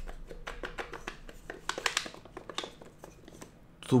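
Wooden slats of a magnetic puzzle box clicking and clattering against one another as the box is shaken and the slats pull back into line on their magnets. A quick run of small clicks that thins out after about three seconds.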